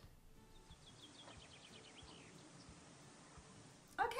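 Near silence over a soft hiss, with a faint run of quick, high bird chirps from about a second in to just past the middle.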